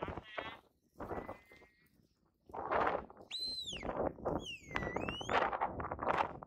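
A sheep bleats briefly right at the start. Later come two clear, high whistled notes, one arching up and falling, the other dipping and rising again, over a loud gusty rushing noise.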